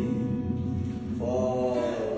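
A man singing a slow melody in long held notes, a new note starting a little past a second in.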